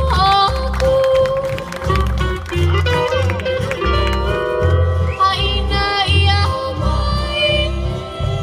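Live Hawaiian steel guitar band music: the steel guitar plays sliding, gliding notes over strummed ukuleles and acoustic guitars, with a bass beat about twice a second and a voice singing along.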